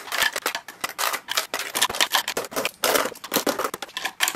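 Metal hair clips clicking and clattering as they are dropped into the compartments of a clear plastic drawer organiser, with many quick, irregular clicks.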